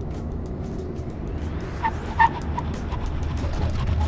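Background music over the steady low rumble of a Holden Commodore SS-V Redline running at about 110 km/h, heard from beside its wheel, with a few short clear notes about two seconds in.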